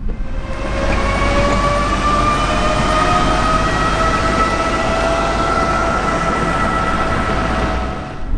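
Mercedes Vision AVTR electric car driving by with a whine of several tones that rise slowly in pitch as it gathers speed, over a steady rush of road and wind noise.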